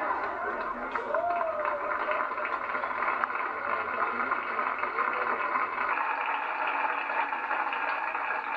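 Studio audience laughing and applauding at a punchline, a steady wash of noise with a few voices calling out of it near the start and again about five seconds in.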